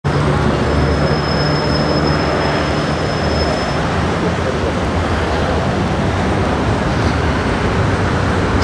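Steady low rumble of outdoor traffic noise, with a faint thin high whine for about three seconds near the start.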